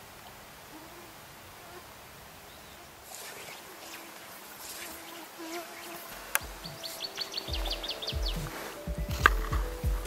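Faint outdoor quiet with an insect buzzing on and off, then background music with long held notes comes in about six seconds in. A quick run of clicks and some low thumps come through near the end.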